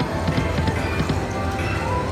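88 Fortunes slot machine spinning its reels: a quick run of clicks and low knocks from the spin sound effects over electronic chime tones. Near the end a tone glides up and then holds.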